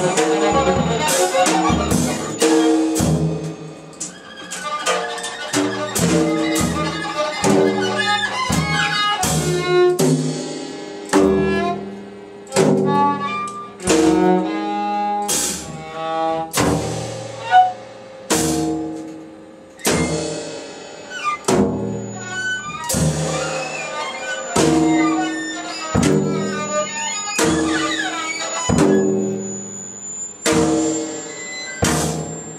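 Experimental electronic music played live from a laptop and table-top gear: an irregular string of pitched notes, each struck sharply and then ringing out and fading, about one or two a second, with a faint high steady tone underneath at times.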